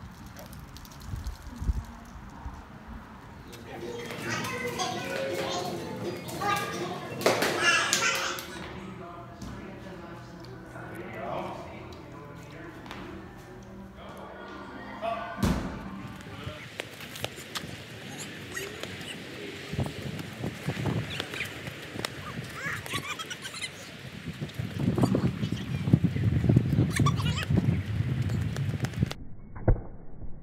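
Indistinct voices over changing background noise.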